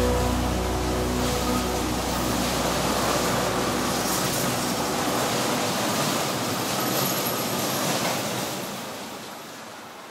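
An LRT-1 light rail train pulling away on its tracks, a steady rail-and-wheel noise that fades from about eight seconds in as it moves off. Background music fades out over the first few seconds.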